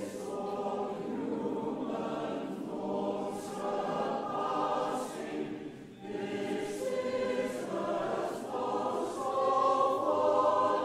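Mixed SATB choir singing, with a short break between phrases about six seconds in.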